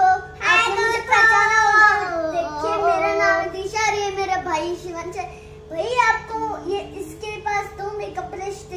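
A young girl's high sing-song voice, holding and gliding on notes in phrases with short pauses. A faint steady hum runs underneath.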